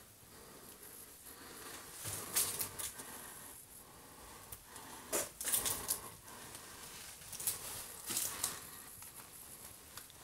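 Footsteps crunching and scuffing over debris on a floor, coming in three short bursts of crackles a few seconds apart.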